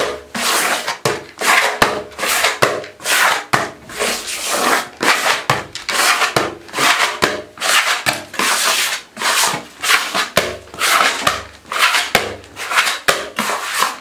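A sponge rubbing back and forth over a painted wall in quick, even strokes, about two a second.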